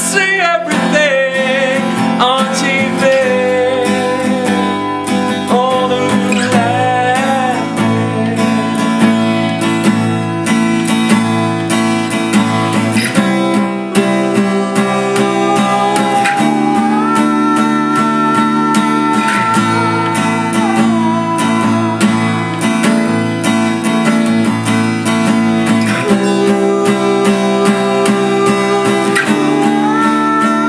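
Steel-string acoustic guitar strummed in a steady rhythm, with a man singing over it in long held notes that waver and glide.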